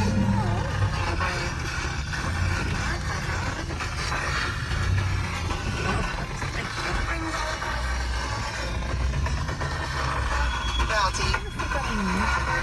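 A truck's engine running at a low, steady rumble as it rolls slowly over a rocky dirt trail, heard from inside the cab, with a radio voice faint in the background.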